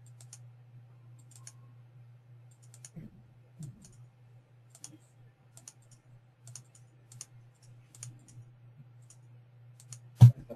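Faint computer mouse clicks, about a dozen spread irregularly, many heard as quick press-and-release pairs, as items on screen are picked one at a time. A steady low electrical hum runs underneath.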